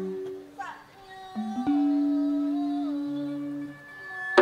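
Gamelan music with a few long, slowly fading notes held between percussion phrases; the loudest note comes in about one and a half seconds in.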